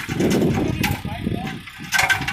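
Diesel engine of a Volvo wheel loader running, with people's voices over it.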